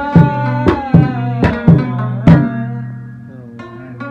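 Afghan rabab playing the last strokes of a piece: about seven sharp plucks in the first two and a half seconds, then the strings are left ringing and fading over a steady low drone, with one faint last pluck near the end.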